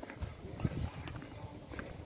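Footsteps of people walking on paving slabs: a quick, irregular run of light clicks and taps.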